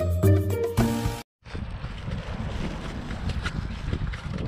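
Instrumental background music with bass notes, cut off abruptly a little over a second in; after a brief gap, steady outdoor background noise, an even hiss with a low rumble.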